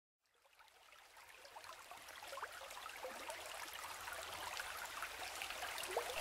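A stream of running water, babbling with many small bubbling blips, fading in from silence and growing steadily louder.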